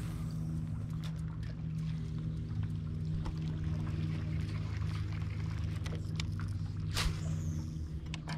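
Bass boat motor running at a steady low hum, with a sharp click about seven seconds in.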